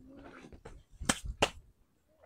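Two sharp snaps or clicks about a third of a second apart, after a short low hum.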